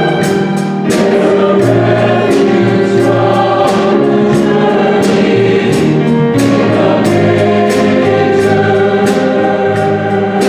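Mixed church choir singing with piano and drum-kit accompaniment. Cymbal and drum hits keep a steady beat of about two a second under the held sung chords.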